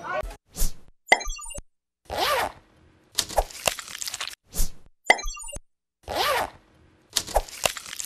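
News channel's sound logo over the end card: a short run of pops, quick stepped blips and a swooping whoosh, separated by brief silences. The sequence plays twice, the second starting about four and a half seconds in.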